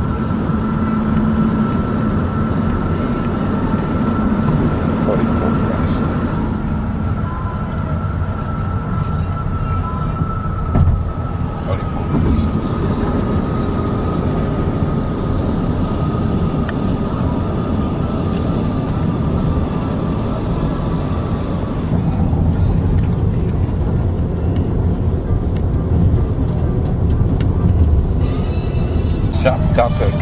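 Road and engine noise inside a car's cabin at highway speed, a steady low rumble, with an indistinct voice from the radio under it. A thin, steady high whine drifts slightly lower and fades out about two-thirds of the way through.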